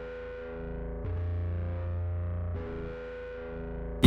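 Quiet intro of a hip-hop beat: a distorted, effect-laden chord riff over sustained bass notes, a new chord struck about every one and a half seconds.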